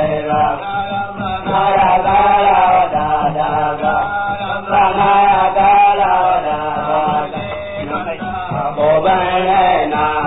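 Hausa praise song: chanted singing over instrumental accompaniment, going on without a break.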